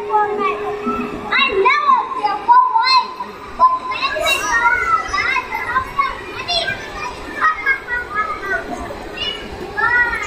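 Many children's voices chattering and calling out over one another, a hall full of young audience noise with no single clear speaker. A steady tone from before fades out about a second in.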